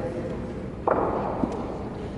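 Background chatter of voices in a large indoor hall, with one sudden sharp knock about a second in that echoes briefly, and a smaller click soon after.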